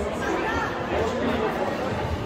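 Indistinct chatter of people talking in a large indoor hall.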